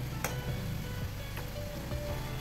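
Soft background music, with two light clicks, one about a quarter second in and one about a second and a half in.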